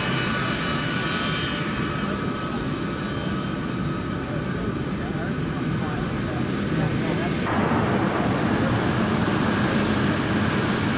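C-17 Globemaster III turbofan engines running on the flightline: a steady jet roar with high whining tones that fade over the first two seconds. About seven and a half seconds in the sound changes abruptly to a broader, slightly louder roar.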